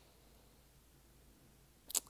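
Near silence: faint room tone, broken by one short, sharp click just before the end.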